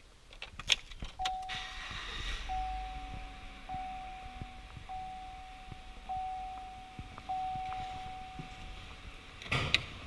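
A 2014 Chevrolet Silverado's warning chime dings six times in a row, one steady single-pitch ding about every 1.2 seconds. Clicks and handling knocks come at the start, and a louder clatter comes near the end.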